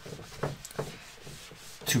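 Handheld whiteboard eraser wiping marker off a whiteboard in a series of short rubbing strokes, about two a second.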